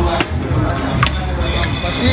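Three sharp glass clinks as glassware is handled at a drinks counter, over background music and a low steady hum.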